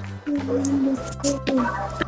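Background music with steady held tones and a few short pitched notes over them.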